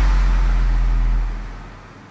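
The final deep sub-bass note of an electronic trap track, held after the last drum hits and fading out over the second half.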